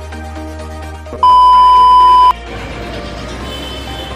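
Electronic background music, then about a second in a loud, steady electronic beep at one high pitch that lasts about a second and cuts off sharply, followed by a noisy background with faint music.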